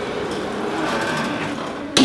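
Steady noise as the steel entry door swings closed on its closer, ending near the end with a sharp bang as it shuts and latches.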